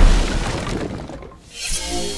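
Intro logo sting: a loud shattering crash at the start that fades over a second or so, then a second hit near the end that rings out as a held musical chord.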